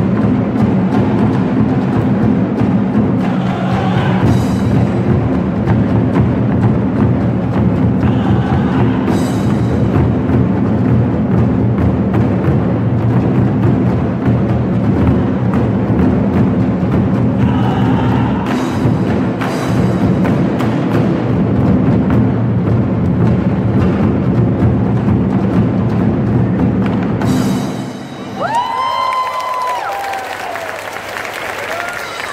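An ensemble of large barrel drums beaten with sticks, playing fast, dense, loud rhythms. The drumming stops a couple of seconds before the end.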